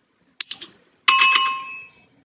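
Sound effects of a subscribe-button animation: three quick mouse clicks, then a loud bell chime, the notification bell, ringing with several clear tones and fading out.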